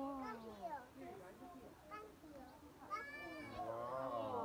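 People's voices talking nearby, with a high-pitched, drawn-out vocal cry about three seconds in.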